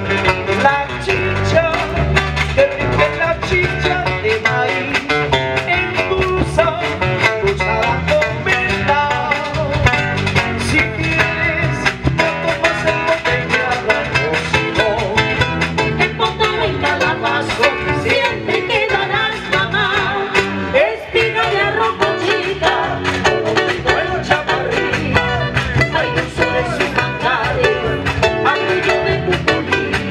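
Live marinera music: a band of acoustic guitars and percussion plays a steady dance rhythm.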